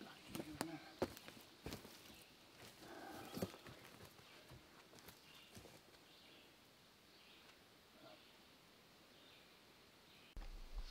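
Faint footsteps and a few scattered light knocks, with a low murmur of voices, in the first few seconds; then near silence.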